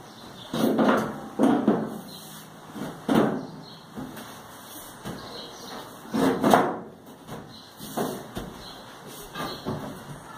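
Metal top panel of a Samsung clothes dryer being slid and pressed into place: a series of irregular knocks and scrapes, the loudest about six and a half seconds in.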